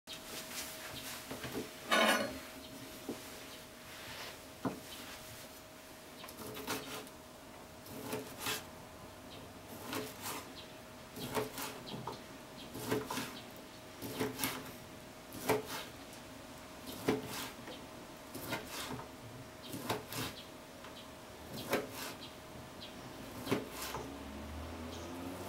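Chef's knife slicing wiener sausages, the blade knocking down through each piece onto a plastic cutting board in a steady rhythm of about one to two cuts a second. A longer, louder clatter comes about two seconds in, and a faint steady hum runs underneath.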